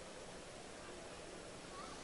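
Quiet background of a large exhibition hall: a steady hiss and low hum with faint distant voices.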